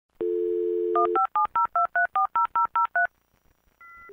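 A dial-up modem taking the phone line: a steady dial tone for about a second, then eleven quick touch-tone beeps dialing the number, the first stage of connecting to the internet by dial-up. A short two-tone beep sounds near the end.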